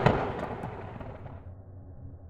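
Intro boom sound effect, thunderclap-like, dying away over about the first second and a half and leaving a faint low hum.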